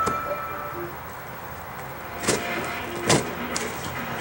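Cardboard shipping box being handled and opened on a desk: two short, sharp sounds of cardboard and tape a little under a second apart, past the middle.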